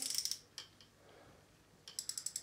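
Front drag knob of a Jaxon Saltuna 550 spinning reel clicking as it is turned another half turn tighter. Near the end the drag starts to give out line with fast, even ratchet clicks as line is pulled off the spool by hand.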